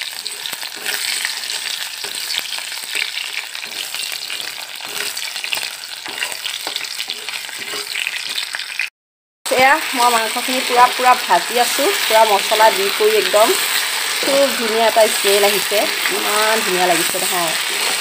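Potato chunks sizzling in hot oil in an iron kadai. After a brief cut to silence about nine seconds in, meat and onions are stir-fried in the pan with a metal spatula, the sizzling carrying on under a person's voice.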